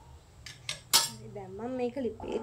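Stainless-steel cooking pot handled with a couple of light metal clinks, then a loud, sharp metal clank with a brief ring about a second in. A voice starts in the last part.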